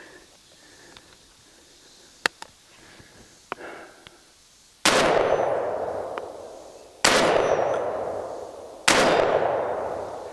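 Benelli M4 Tactical 12-gauge semi-automatic shotgun firing three shots about two seconds apart, each report ringing out and dying away slowly, after two light clicks of gun handling. The loads are cheap 3 dram-equivalent Winchester Universal birdshot, which fail to feed in this string.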